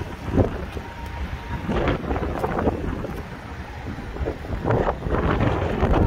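Wind buffeting the microphone, a continuous low rumble, with a few brief knocks mixed in.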